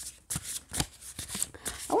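A deck of oracle cards being shuffled by hand: a quick, irregular run of card flicks and slaps.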